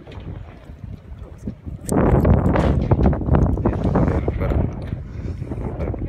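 Loud rustling and buffeting noise on the microphone, starting suddenly about two seconds in after a quieter stretch of outdoor background noise.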